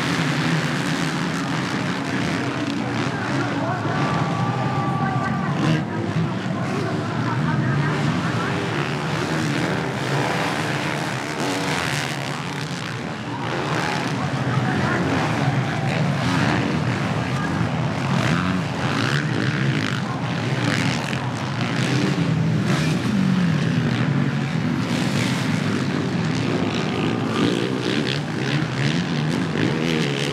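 Several 450-class motocross bikes racing on a dirt track, their engines rising and falling in pitch as the riders work the throttle.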